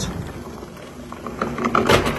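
Glass sliding patio door panel rolling along its track, a rumbling slide that fades over the first second. A run of short high squeaks follows, then a sharp click near the end as the panel seats against its magnetic catch.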